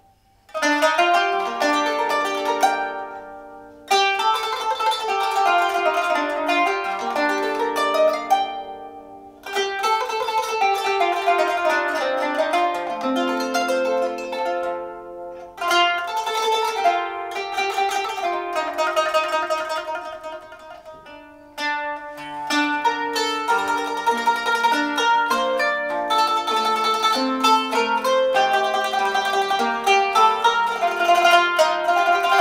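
Solo qanun, the Arabic plucked zither, played by hand with fast runs of plucked, ringing notes. It starts about half a second in and goes in phrases broken by brief pauses about 4, 9, 15 and 21 seconds in.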